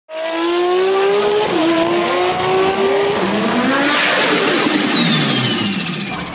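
Sports car engine revving hard, rising in pitch with an upshift about a second and a half in, then falling in pitch, with a falling high whoosh over the last two seconds.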